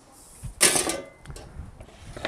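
A short scrape about half a second in, lasting about half a second: a pizza peel sliding across the oven's stone floor as the pizza goes in. A few light knocks follow.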